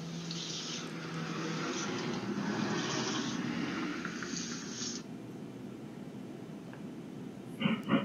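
A broom scrubbing over a wet porch floor, heard through a doorbell camera's microphone as a rough, steady hiss that cuts off abruptly about five seconds in.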